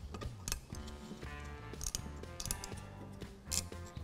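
A few light metallic clicks and scrapes from a flat-blade screwdriver prying the steel slide clips off a rusty brake caliper bracket, over soft background music.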